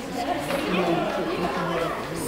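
Several young girls chattering at once, overlapping voices with no single clear speaker.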